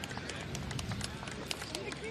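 Faint outdoor ambience with many scattered light clicks at irregular spacing, and a brief faint voice near the end.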